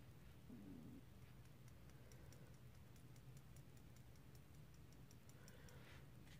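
Near silence: room tone with a faint run of quick, high clicks, about five a second, from about a second and a half in until near the end.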